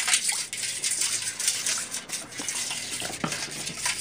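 A coiled wire whisk churning a thin green pandan agar-agar mixture in a pot, a steady liquid swishing with a few light clicks of metal on the pot.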